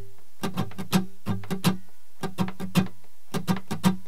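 Acoustic guitar strummed with a pick through an open-position chord in a swung, uneven rhythm. The strums come in quick groups with a short pause about halfway.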